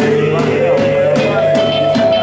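Rock band playing live: drums striking a steady beat, about two or three hits a second, under a long held note that slides slowly upward in pitch.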